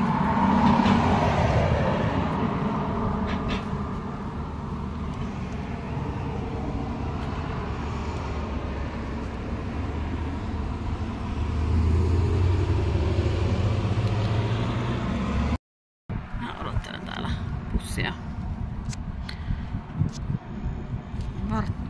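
Road traffic passing: a car goes by in the first couple of seconds, then a deeper vehicle engine rumble builds from about eleven seconds until the sound cuts off abruptly. After the cut come a few sharp clicks.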